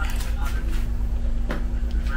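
A steady low background hum, with two faint clicks, one at the start and one about a second and a half in.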